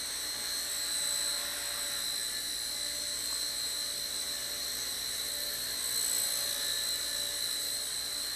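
Blade Nano CP S micro collective-pitch RC helicopter hovering under its six-axis stabilization, its motor and rotors giving a steady high-pitched whine.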